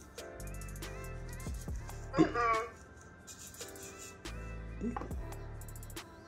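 Background music with a steady beat, over which the EMO desktop robot pet lets out short, chirpy electronic voice sounds: the loudest about two seconds in, a smaller one near five seconds.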